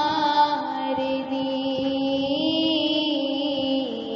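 A singer drawing out long held notes of a devotional shlok without words, the pitch gliding slowly and dropping near the end.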